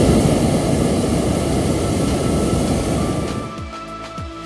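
Hot air balloon propane burner firing with its blast valve held open: a loud, steady rush of flame that dies away and stops about three and a half seconds in.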